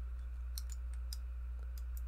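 Scattered faint light clicks of a sixth-scale Iron Man Mark V action figure's armor pieces and hinged back flaps being handled and moved, over a steady low hum.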